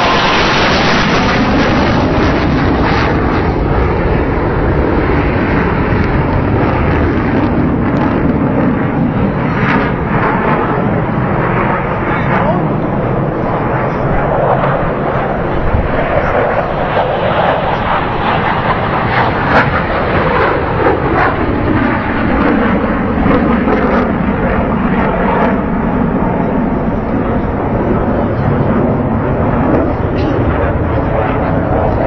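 Engine noise of military display jets flying over an air show, loud and continuous, with a hollow sweep that slides slowly down and back up in pitch as the aircraft pass.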